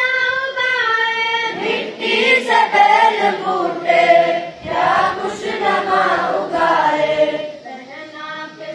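A single boy's voice holds a sung line of a morning prayer. About a second and a half in, a large group of boys joins in unison, chanting the prayer together. Near the end it thins back to fewer voices.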